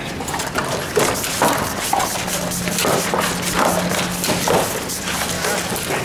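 Rapid, irregular clatter and thumps from a large crane rod puppet being worked by hand: its stiff wing panels flapping and knocking, and its feet hopping on a concrete floor.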